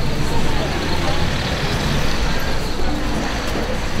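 Street traffic noise: a steady rumble of passing cars, with faint voices in the background.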